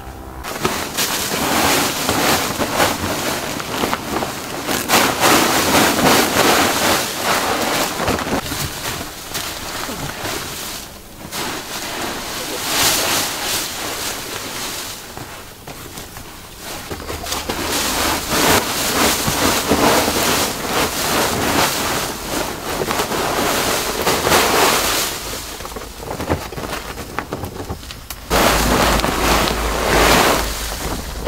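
Fresh-picked tea leaves, a plastic woven sack and a tarp rustling loudly as the leaves are spread out by hand and poured from the sack onto a pile. The rustling comes in waves with brief pauses.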